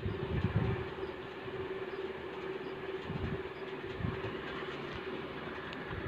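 Hand-milking a Nili-Ravi buffalo: streams of milk squirting into a steel pot, heard as a steady hiss with a few soft low thumps. A steady low hum runs underneath.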